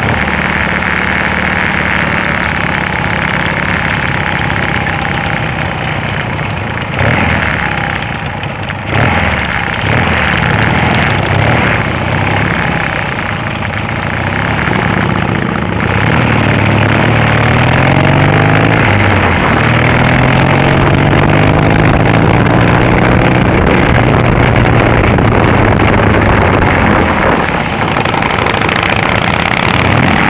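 Triumph Bonneville's parallel-twin engine heard from on board while riding, over rushing wind and road noise. The engine note rises and falls with throttle and a gear change around the middle, then holds steady at cruising speed for the last third.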